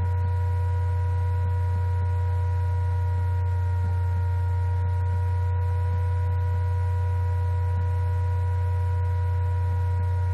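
Laptop cooling fan heard through the laptop's built-in microphone: a steady low hum with a few faint, even whining tones above it.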